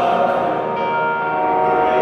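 Live synth-pop band music in a large arena: held synth chords under two male voices singing long notes in harmony, heard through the PA with the hall's echo.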